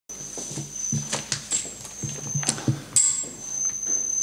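Irregular low thuds of footsteps and knocks at a lectern as a man steps up to it, picked up by the lectern microphones. Several sharp clicks fall among them, over a thin, steady high-pitched whine.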